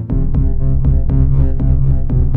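Electronic synthesizer music: a low Behringer Neutron bassline under a Boss SH-01A lead, sequenced by a Novation Circuit. It pulses with sharp note attacks about four times a second.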